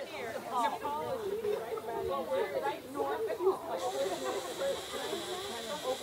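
Overlapping chatter of several people talking at once, with no single clear voice. A steady high hiss joins about four seconds in.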